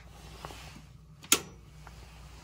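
A sharp click just over a second in, after a fainter click: the toggle of the boiler's red emergency switch being thrown to cut power to the steam boiler. This power cycle resets the automatic water feeder's safety lockout. A low steady hum runs underneath.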